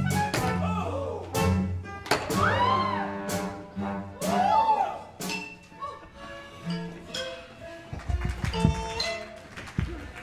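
Live stage-show band music with sharp percussive hits and several swooping notes that rise and fall.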